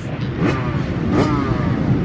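Dirt bike engine revving in the background, its pitch rising and falling a few times over a steady low engine hum.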